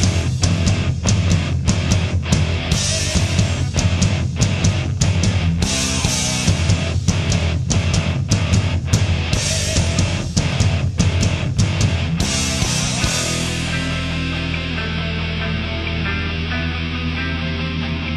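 Hard rock band recording: distorted electric guitars, bass and drums playing a steady beat. About 13 seconds in the drums drop out, leaving a held guitar and bass chord ringing.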